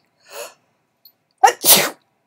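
A person sneezes: a gasping intake of breath, then a loud sneeze about a second and a half in.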